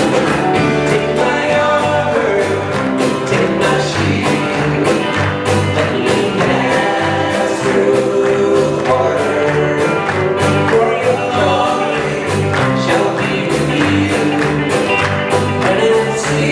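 A live band playing a gospel rock song with electric and acoustic guitars, bass guitar and a drum kit keeping a steady beat, with voices singing the chorus over it.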